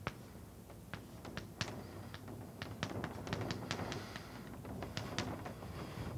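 Chalk on a blackboard, a run of sharp taps and short scrapes as an arrow and a word are written, busiest through the middle of the stretch.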